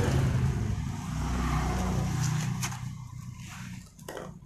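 A motor vehicle engine running nearby, a low steady hum that fades away over the last second or so, with a couple of light clicks about halfway through.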